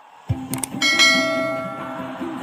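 Subscribe-button overlay sound effects: two quick mouse clicks about half a second in, then a bright notification-bell ding that rings and fades. Under it, an acoustic guitar starts playing.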